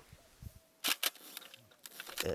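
Shutter of a medium-format Hasselblad film camera firing once about a second in, a quick double click of mirror and shutter.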